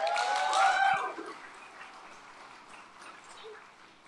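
Audience applauding and cheering, loudest in the first second, then dying away over the next couple of seconds.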